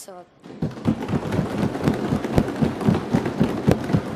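Many people applauding by thumping their desks, a dense run of thuds that starts about half a second in and keeps going.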